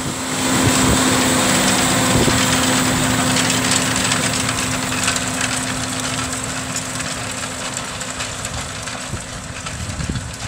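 John Deere 6215R tractor's six-cylinder diesel engine running steadily under load as it pulls a tined cultivator through the soil. The sound fades gradually as the tractor moves away.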